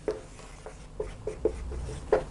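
Dry-erase marker writing on a whiteboard: about five short squeaks as the pen strokes out letters.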